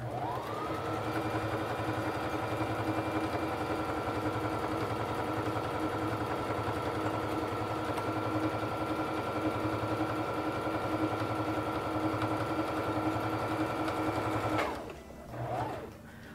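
Singer 3342 Fashion Mate sewing machine stitching a one-step buttonhole. The motor starts up, rising in pitch over the first second, runs at a steady speed, then stops shortly before the end, with a brief short sound just after.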